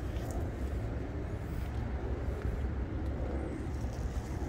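Outdoor background rumble: a steady low rumble over a faint even hiss, typical of distant road traffic and wind on a phone microphone in an open lot.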